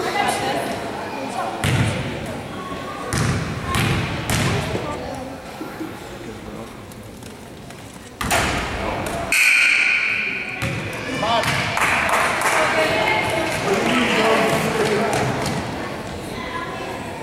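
A basketball bounced a few times on a hardwood gym floor, with spectators talking in the background. About eight seconds in a sudden louder burst comes, followed by crowd voices.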